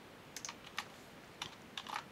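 A few scattered keystrokes on a computer keyboard: about half a dozen separate key presses with short gaps between them.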